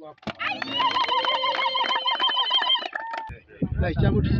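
Ululation: a high, rapidly trilling call held for about two seconds, over clapping from a crowd, as celebration. Near the end a man starts speaking.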